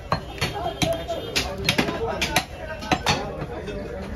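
Irregular sharp knocks of chopping blows on a wooden butcher's block, about a dozen in four seconds, over people talking.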